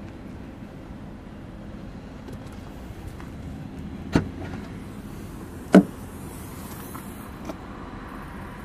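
Volkswagen Polo tailgate being opened with its VW badge release: a click a little after four seconds in, then a louder latch clunk about a second and a half later as the boot lid is lifted, and a faint click near the end, over a steady low hum.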